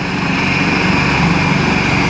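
Leonardo AW189 twin-turbine helicopter running on the ground with its main rotor turning, ready to lift off: a steady high turbine whine over the rapid, even chop of the rotor blades.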